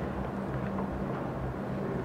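Steady low background hum with faint room noise and no distinct events.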